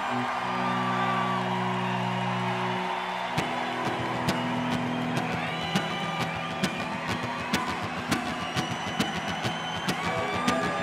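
Live rock band music between songs. A held electric guitar chord rings out over crowd noise for about three seconds, then a steady rhythm of sharp ticks starts as the next song begins.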